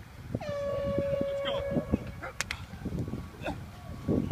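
An air horn gives one steady blast lasting about a second and a half, followed about half a second later by a single sharp smack.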